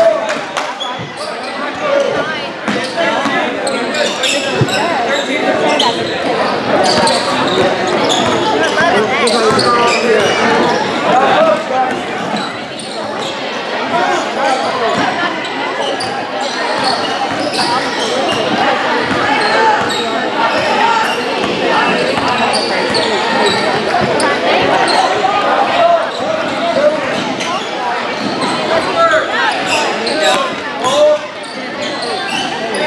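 Basketball being dribbled on a hardwood gym floor during play, with indistinct voices from players and spectators echoing in the hall.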